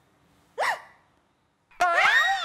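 A girl's short, high-pitched gasping squeak about half a second in, its pitch rising and falling. Near the end comes a loud, high-pitched excited squeal of delight.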